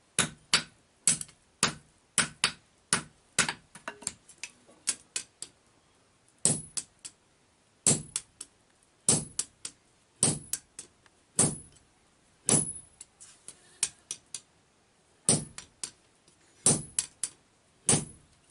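Hand hammer blows on a red-hot steel axe head on an anvil, some landing on a handled punch held against the hot steel; several blows leave a bright metallic ring. About two blows a second at first, then slower, single blows roughly a second apart with a short pause past the middle.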